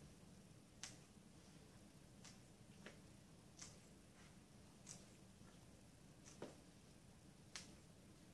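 Chinese long beans being broken into short pieces by hand, each break a faint, sharp snap, about eight at irregular intervals over a low steady room hum.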